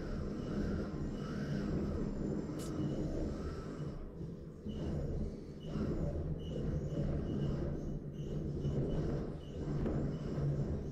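Robot combat arena ambience: a steady low hum and rumble from the arena and the robots' drive motors as two small combat robots push against each other. A faint short high tone repeats about once or twice a second.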